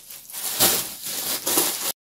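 Blue plastic carrier bag rustling and crinkling as it is handled, then cutting off abruptly near the end.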